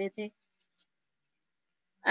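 A woman's voice says one short word, then near silence: the call audio drops out almost entirely.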